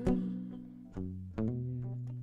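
Acoustic guitar playing a slow fill between sung lines: a few separate plucked notes, the low ones left ringing.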